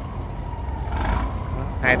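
Engine of a large steel river cargo boat running, a steady low rumble with a faint steady higher tone over it.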